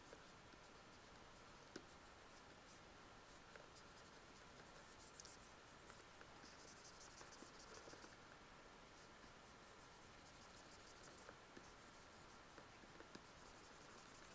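Faint scratching of a stylus making quick drawing strokes on a graphics tablet, barely above near silence, coming in two busier runs, one around the middle and another a few seconds later.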